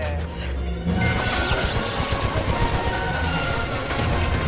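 Orchestral action score over a dense mix of effects: low rumble throughout, and about a second in a sudden loud crash with a high falling whistle.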